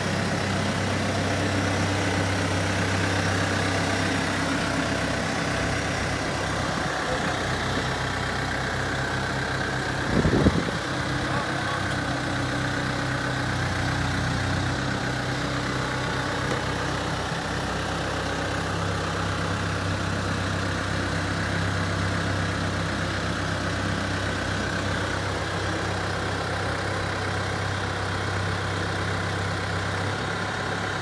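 A heavy diesel engine idling steadily, with one sharp knock about ten seconds in.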